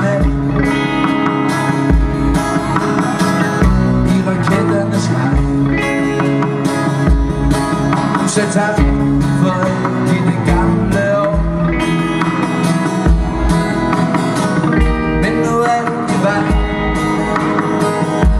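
Live folk-pop band playing, with electric and acoustic guitars over drums and a steady low beat.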